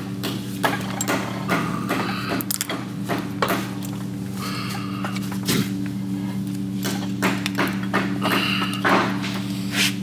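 Steel press blocks and an axle shaft with its hub being shifted and seated in a shop press: scattered metal clanks and knocks, a few of them ringing, while the parts are set up to press a new wheel bearing onto the axle. A steady low hum runs underneath.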